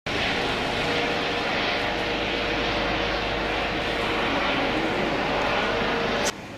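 Police helicopter flying: steady, loud engine and rotor noise with a constant whine.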